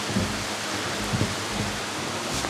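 A mountain stream running steadily over rock, with a couple of faint short knocks.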